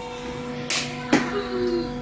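Hockey puck shooting practice on a rubber floor: two sharp cracks of stick and puck impacts about half a second apart, the second one louder, over a steady hum.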